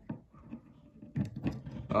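Faint small clicks from handling a die-cast Avro RJ model airliner's loose tail piece, the piece that keeps falling off. A low murmured voice follows in the second half.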